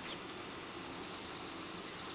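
Quiet outdoor background hiss with a single short, high-pitched chirp right at the start.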